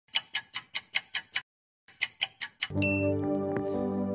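A quick run of sharp ticks, about five a second, breaks off briefly and resumes, then a bright chime rings out and a sustained electronic keyboard chord comes in and holds.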